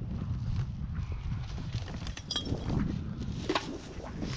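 Footsteps on dry leaves, pine needles and twigs on a forest floor, irregular steps, over a steady low rumble of wind on the microphone.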